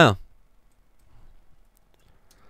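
A single faint computer mouse click near the end, in a quiet room after a spoken word.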